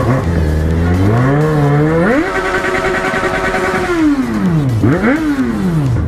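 Yamaha XJ6 inline-four motorcycle engine revving hard as the bike pulls away. The revs climb over about two seconds, jump up and hold high for nearly two seconds, then drop. They blip up once more about five seconds in and fall again.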